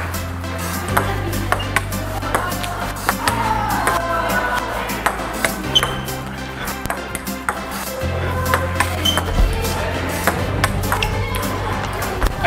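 Background music with a steady bass line changing note every couple of seconds. Over it, a ping-pong ball clicks again and again in an irregular rally, bouncing on the table and struck with a gloved hand and with a ski.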